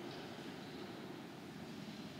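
Steady background noise, an even hum and hiss with no speech or music.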